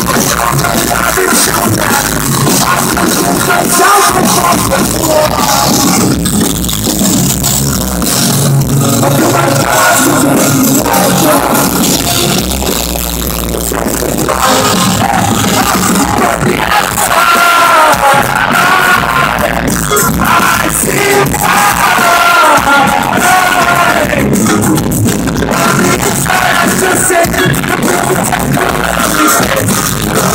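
Live pop-punk band playing loud, with electric guitars, bass, drums and a sung lead vocal, heard from the middle of the crowd.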